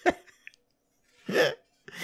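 A man's brief laughter: the tail of a laugh at the very start, then one short laugh about a second and a half in, with a quiet gap between.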